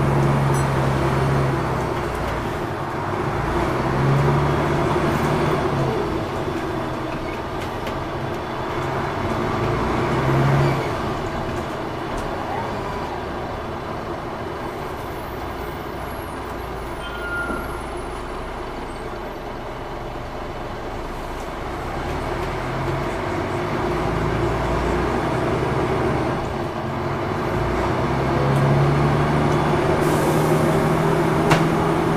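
Interior of a DAF DB250LF/Plaxton President bus under way: the diesel engine running with road and body noise. The engine note swells in several surges, about a second in, around four and ten seconds, and again near the end, and it is quieter in between.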